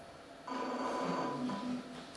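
A steady high-pitched electronic tone sounds for about a second starting half a second in, then briefly again near the end, over a lower pitched sound.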